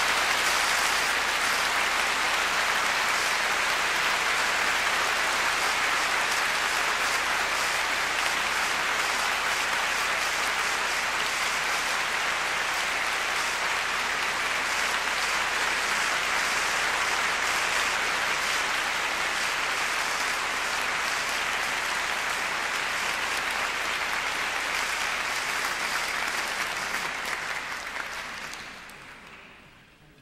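Concert audience applauding steadily, dying away near the end.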